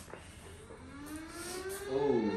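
Opening of a music video playing back: a sustained tone with several overtones, rising slowly in pitch and swelling louder over about two seconds.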